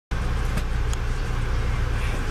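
Steady low rumble inside a moving passenger train car, with two faint clicks in the first second.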